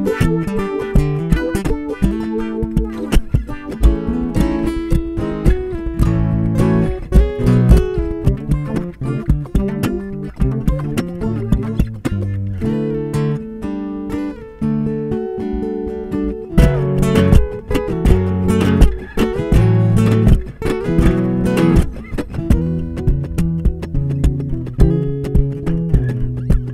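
Enya NEXG 2 smart guitar playing layered, repeating plucked guitar loops. The pattern changes several times as one loop gives way to the next.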